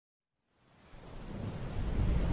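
Rain ambience with a low thunder rumble, fading in from silence about half a second in and growing steadily louder.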